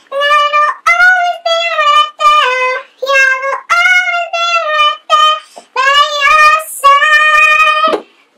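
A girl singing unaccompanied in a high voice: a string of held notes with short breaks between them, some gliding in pitch.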